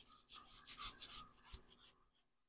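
A large kitchen knife cutting through a watermelon slice: faint, repeated rasping strokes of the blade through the flesh and rind, with a soft knock about one and a half seconds in.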